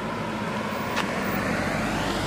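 A car driving past on the road, its engine and tyre noise growing steadily louder as it comes by. A single short click about a second in.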